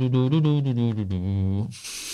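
A man humming a bass-line idea through closed lips, a low droning tone whose pitch slides and bends, cut off near the end by a short breathy hiss.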